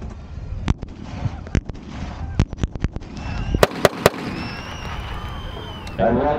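9mm handgun being fired: a string of sharp shots, the loudest three in quick succession about three and a half to four seconds in.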